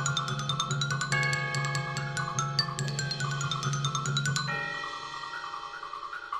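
Mallet percussion playing: a quick, even run of bright high glockenspiel notes over sustained ringing chords and a low rolled marimba note. About four and a half seconds in, the run and the low note stop, leaving only held ringing tones.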